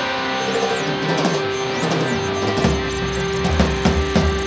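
Progressive rock band playing an instrumental passage: electric guitar and keyboard over a drum kit, with a held note running through. About two-thirds of the way in, the low end fills out and the drum strikes get heavier.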